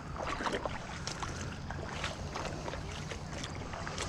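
Steady background noise of a shallow, rocky river's current, with a few faint clicks.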